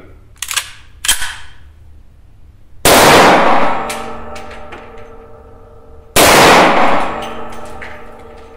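Two .357 Magnum shots from a Desert Eagle pistol about three seconds apart, each followed by a long ringing decay. Before them come a couple of light metallic clicks from the pistol being handled.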